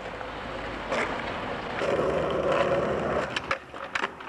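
Skateboard wheels rolling on asphalt, with a clack about a second in. A louder grind along a concrete curb follows for about a second and a half, and it ends in a few quick clacks.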